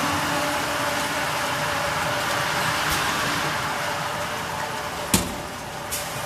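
RFC 4-4-1 water filling machine for 5L bottles (washing, filling and capping heads over a conveyor) running with a steady mechanical hum and a steady tone, with one sharp knock about five seconds in.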